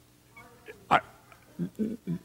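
A person's voice in a quiet room: faint voice sounds, one short sharp vocal sound about a second in, then a man's speech beginning near the end.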